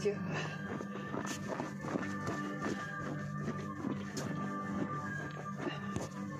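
Music playing, with long held tones and scattered short knocks over it.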